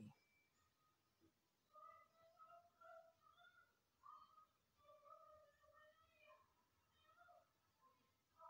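Near silence, with a faint, distant, high-pitched voice in short held notes from about two seconds in until near the end.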